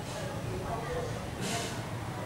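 Faint, indistinct speech from people in a room, with a brief hiss about one and a half seconds in.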